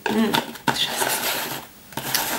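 A woman's voice briefly at the start, then about a second of rustling and handling noise.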